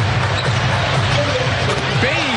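Steady crowd noise in a large basketball arena during live play, with a basketball being dribbled on the hardwood court.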